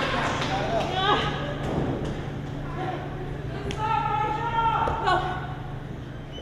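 A voice calling out in the ring, with a drawn-out shout about four seconds in, over several dull thuds of bodies and feet on the wrestling ring canvas.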